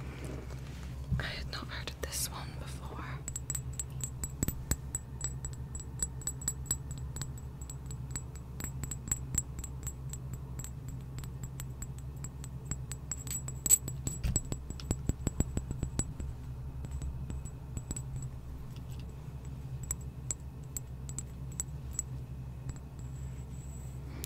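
Fingernails tapping and clicking on a small glass dropper bottle close to the microphone: a quick, irregular run of light taps from about three seconds in until just before the end.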